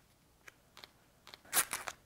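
Athletic tape pulled from the roll and torn by hand: a few faint ticks, then a short, louder rasp about one and a half seconds in.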